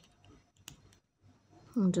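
Faint handling of seed-bead beadwork as a needle and monofilament thread are drawn through the beads, with one sharp click about two-thirds of a second in.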